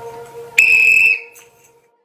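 One short blast on a coach's whistle, a steady high tone lasting about half a second, starting about half a second in. Background music fades out under it.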